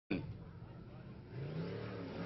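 Faint, distant race-boat engine running, its pitch slowly rising in the second half, after a short click at the very start. It is the twin-turbo Nissan engine of a jet sprint boat approaching along the course.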